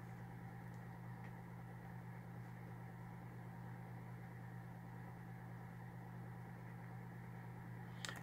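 A quiet, steady low hum over faint hiss: room tone.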